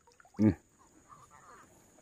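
A man's short, voiced "hmm" about half a second in; the rest is faint background.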